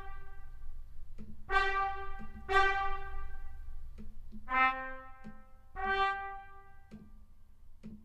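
Sampled trumpet from the Cinesamples CineBrass Pro library in Kontakt playing separate held notes one after another, each about a second long. Around four and a half seconds in, two notes sound together.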